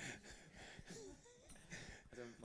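Near silence: room tone with a few faint, brief chuckles.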